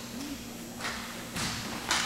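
Three short thumps or knocks about half a second apart, the last the loudest, over a steady low hum.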